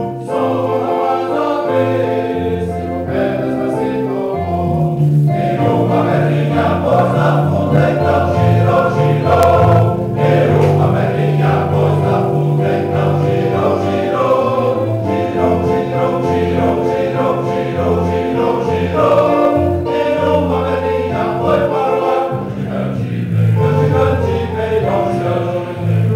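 Men's choir singing a hymn, several low male voices holding chords together.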